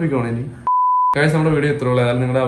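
A short censor bleep, one steady pure tone lasting about half a second, cuts in just over half a second in and blanks out a man's voice. The voice picks up again right after it.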